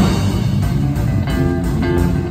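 A jazz big band playing a chart live, with drum kit, electric guitar and horns.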